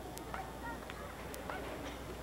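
Faint murmur of spectators in stadium stands, with a few short high calls and a couple of sharp clicks scattered through it, over a steady low hum.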